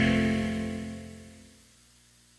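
The last chord of a country song rings out on an acoustic guitar and dies away to silence about a second and a half in.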